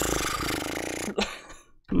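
A man's breathy, stifled laugh lasting about a second, with a short voiced laugh after it.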